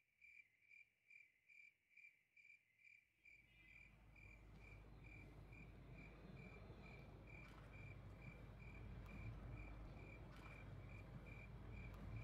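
Faint crickets chirping in an even rhythm, about two to three chirps a second, on one high pitch. From about three seconds in a low rumble of background noise rises underneath.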